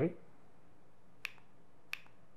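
Two short, sharp clicks about two-thirds of a second apart, from the button of a handheld presentation remote.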